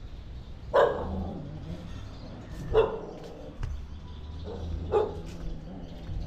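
A dog barking three times, about two seconds apart, each bark short and sharp.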